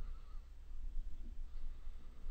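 Faint low hum and room noise from the recording between narrated lines, with no distinct sound event.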